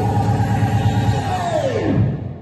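Recorded dance music with a steady beat accompanying the routine; near the end a tone slides sharply down in pitch as the track winds down.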